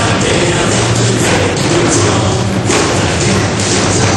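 Group drumming: several performers striking large standing drums together over music with a steady beat.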